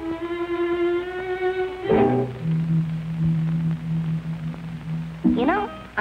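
Cartoon orchestral score: a long held bowed-string note, then, after a short accent about two seconds in, a lower held string note. A voice comes in near the end.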